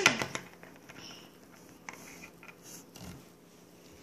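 Quiet room with a few faint, small clicks and taps.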